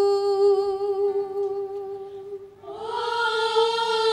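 A woman's voice holding a long hummed note with a slight vibrato, fading out about two and a half seconds in; then a women's choir comes in on a held, slightly higher note, without accompaniment.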